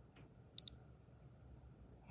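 CareSens N blood glucose meter giving one short, high beep as control solution is drawn into the test strip, marking the sample being detected and the measurement countdown starting.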